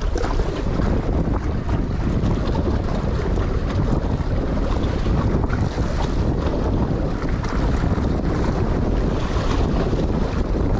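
Wind buffeting the microphone with a steady low rumble, over sea water washing against the rocks of a jetty.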